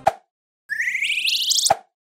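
Editing sound effects. A short pop, then about half a second later a rising electronic tone with a rapid buzzing texture that lasts about a second and is cut off by a second pop.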